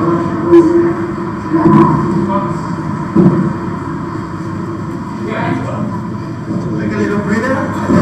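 Sound of a classroom exercise video played through a hall's speakers and echoing: indistinct voices and the bustle of a group working out, with a rumbling undertone. A few sharp knocks stand out about half a second, two seconds and three seconds in.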